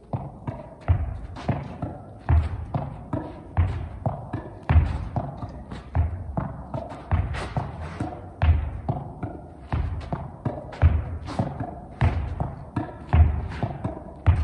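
Soft U8 yellow-red junior tennis ball rallied against a wall with a racket in forehand groundstrokes: a steady rhythm of racket hits, wall rebounds and court bounces, with a heavier thud about every 1.2 seconds.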